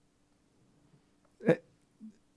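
A pause with a faint steady hum, broken about one and a half seconds in by a single short vocal sound from the man speaking.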